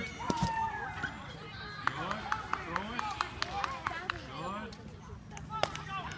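Indistinct background voices of children and adults, with a few sharp knocks just after the start and a quick run of light clicks in the middle.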